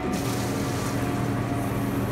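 Coin-operated drinking-water vending machine starting as its button is pressed: the pump hums steadily while water runs into a plastic bottle.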